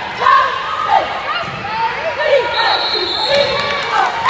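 Basketball game sounds in a gym: a ball being dribbled on the hardwood court, with voices echoing in the hall. A brief high-pitched tone comes in about two and a half seconds in.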